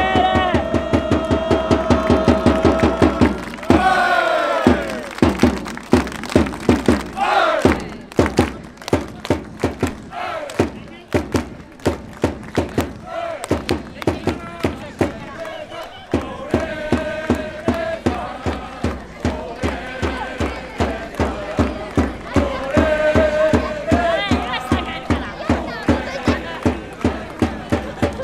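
Music with a steady beat and crowd voices in a football stadium, with melodic lines over regular rhythmic strokes.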